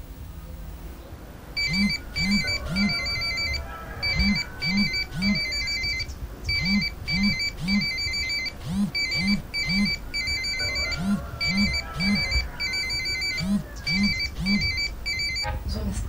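Mobile phone ringing with an electronic ringtone: a phrase of three quick beeping notes repeats about every two and a half seconds, starting about a second and a half in.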